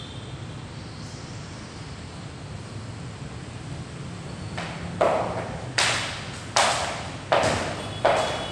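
Heavy battle ropes slamming on a tiled gym floor in a steady rhythm, four sharp slaps about three-quarters of a second apart starting about five seconds in, each trailing off in the room's echo.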